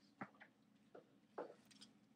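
Marker drawing a line on a board, heard as a few short, faint scratches and taps: the one-fourth being crossed off.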